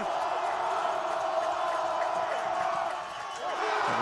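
Football crowd cheering in the stands, a steady wash of noise that eases off about three seconds in.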